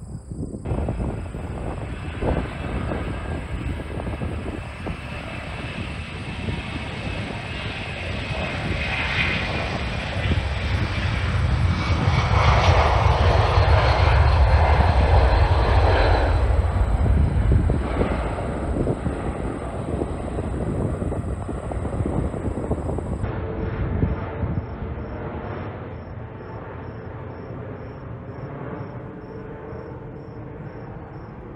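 Jet airliner taking off: engine noise with a whine sliding down in pitch builds to a peak about halfway through, then fades. About two-thirds of the way in, it gives way abruptly to a quieter, steady jet rumble.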